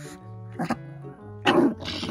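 Small Maltese dog giving short, harsh growl-barks, a brief one just under a second in and a louder one about a second and a half in, over steady background music; a grumpy warning at the owner's hand.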